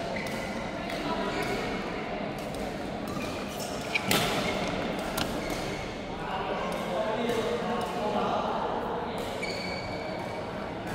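Badminton racket hits on a shuttlecock echoing in a large hall: two sharp cracks, the loudest about four seconds in and a lighter one a second later. Voices and chatter from the hall run underneath, with a few short squeaks.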